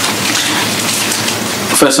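A steady, even hiss with no clear speech: the loud background noise that runs under the whole recording.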